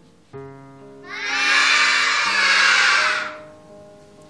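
A classroom of children cheering and shouting together for about two seconds, over soft background music of held piano-like notes.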